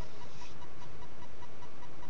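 Steady background hiss with a faint, rapidly pulsing high tone running through it; no distinct event stands out.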